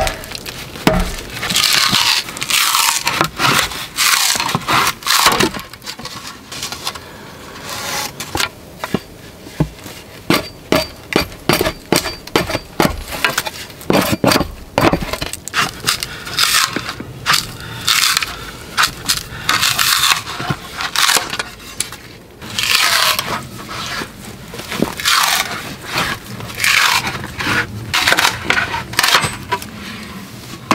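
A wooden club knocking a froe's blade into a log section, then the wood cracking and tearing as the froe is levered to split off a shingle, the cycle repeating several times with many sharp knocks.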